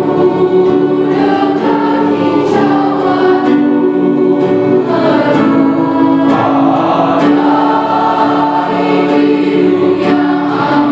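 Mixed choir of teenage voices singing in parts, holding long notes that move to new chords every second or so.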